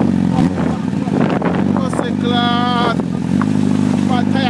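Honda CBR1000 sportbike's inline-four engine held at steady revs through a burnout, its rear tyre spinning on the pavement, with scattered clicks in the first half. A voice shouts briefly a little past halfway.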